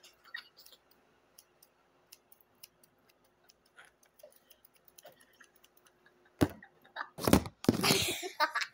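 Scissors snipping close to a microphone, a light irregular clicking. About six seconds in come several loud knocks and rustling as the phone filming tips over.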